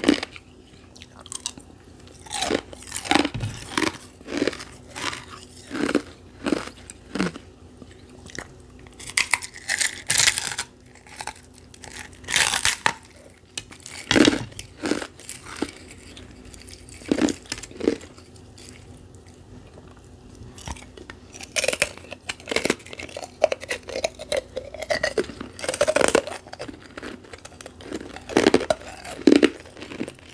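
Crispy refrozen carbonated-ice "pillow" being bitten and chewed, giving a long run of sharp, irregular crunches.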